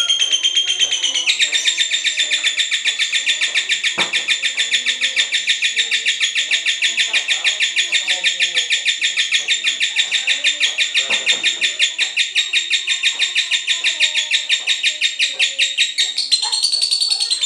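Cinderella-mutation lovebird giving its long 'ngekek' chatter: an unbroken rattle of rapid, evenly repeated high notes that runs for about fifteen seconds, becoming denser about a second in.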